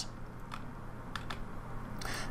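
A few soft, separate clicks of a computer being worked by hand, over a low steady hum.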